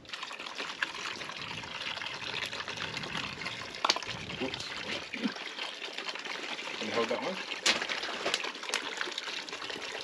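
Vinegar pouring in a steady stream from plastic bottles into a bucket of liquid, with a few sharp clicks along the way.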